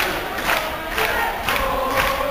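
Large crowd chanting together over a steady beat about twice a second.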